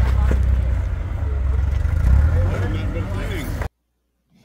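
1943 Willys MB's engine running under load on a rock climb, a steady low rumble, with voices in the background. The sound cuts off suddenly near the end.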